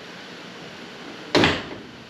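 A single loud metal clunk from a Ford van's rear cargo door as it is swung, about one and a half seconds in, dying away quickly.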